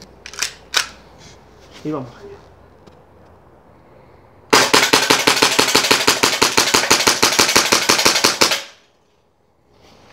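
Tokyo Marui PX4 gas blowback airsoft pistol emptied in a rapid string of shots over about four seconds, each shot a sharp report with the slide cycling, ending abruptly when the magazine runs dry and the slide locks back. The gas pressure holds to the last shot despite the cold, with no drop-off in the rate of fire. Two sharp clicks in the first second come as the gun is readied.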